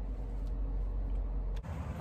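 A car's engine idling, heard inside the cabin as a steady low rumble. It breaks off abruptly about one and a half seconds in, leaving fainter outdoor background noise.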